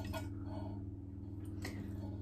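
Raw eggs pouring from a ceramic pie dish into a mixing bowl, faint and soft, over a steady low hum.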